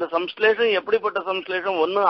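Speech: a man talking without a pause.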